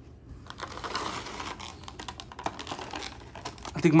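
Handling noise: an irregular run of light clicks and rustles as a small vinyl Funko Pop figure is passed between hands and set down.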